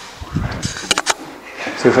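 A man speaking in a small lecture room, in short broken fragments with brief pauses.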